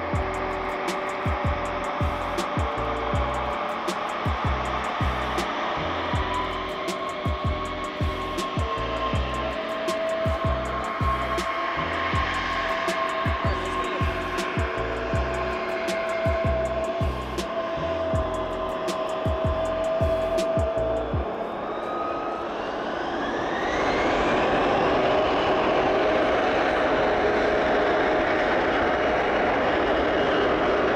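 Background music with a steady beat for about the first two-thirds. It then gives way to a Bombardier CRJ900's twin GE CF34 turbofans spooling up to takeoff power with a rising whine, settling into a steady, louder jet roar as the takeoff roll begins.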